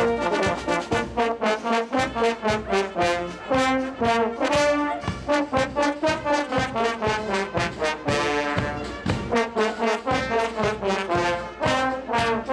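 A large brass band led by trombones and trumpets playing a lively tune, with steady drum beats underneath.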